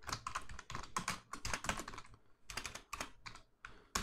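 Computer keyboard keys clicking in quick, irregular runs of typing, with a short pause about halfway through.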